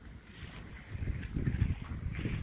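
Wind buffeting the microphone: an irregular low rumble that swells and grows louder about a second in.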